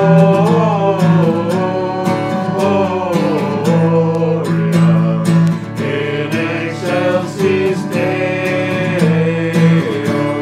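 Live music: several voices singing a song together over a strummed acoustic guitar and an electronic keyboard.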